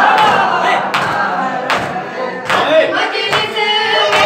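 A group of men chanting a noha together, with rhythmic matam (chest-beating) strokes landing about once every three-quarters of a second.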